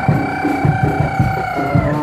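Live traditional Javanese accompaniment for a Bantengan performance: a steady, quick drum beat under one long held high note that stops near the end.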